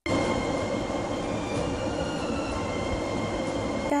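A steady rumbling, rushing noise with a few thin, steady high whines over it. It cuts in and cuts off abruptly.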